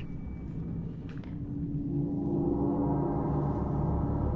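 Ominous dramatic score: a low rumble under a sustained low, gong-like tone that swells gradually.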